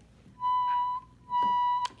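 Red Fisher-Price toy microphone sounding two steady high tones through its speaker, each about half a second long, the second ending in a click.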